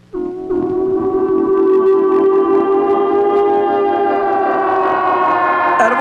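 A loud, long, siren-like held tone with many overtones from a film's title-sequence soundtrack. It starts abruptly after a brief false start and holds steady for about five and a half seconds, creeping slightly up in pitch.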